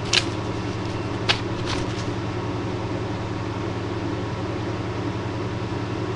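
Steady low electrical hum with a faint hiss, the noise of a poorly set-up webcam recording. Three short sharp clicks come in the first two seconds.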